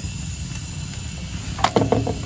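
A few soft knocks and a clatter near the end as a pan is handled and the flatbread dough is laid into it, over a steady low rumble and faint hiss.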